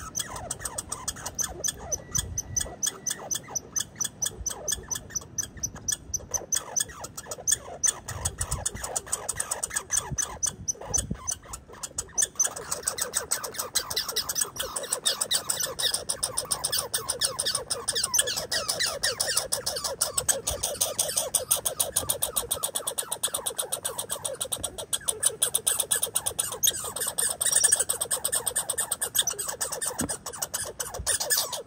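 Red squirrel making a steady run of sharp clicks, several a second.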